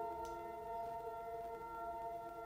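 Soft ambient background music: a sustained chord of several held tones.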